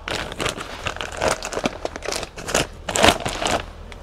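Clear plastic bag crinkling in irregular crackles, louder about a second in and again near three seconds, as a red silicone intake coupler is handled and pulled out of it.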